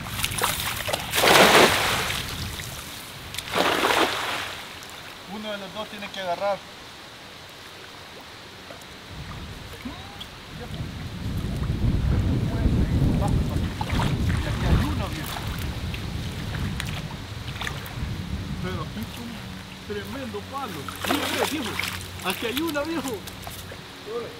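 Cast net thrown into a shallow river, hitting the water with a splash about a second in and another shorter splash near four seconds. Later there is a stretch of low rumbling water sound while the net is worked and hauled back, and two more splashes near the end as the net comes out of the water.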